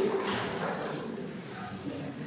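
A pause in a man's speech in a large room: a word trails off at the start, then only quiet room tone.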